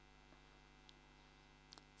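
Near silence: a faint steady mains hum, with a couple of faint clicks.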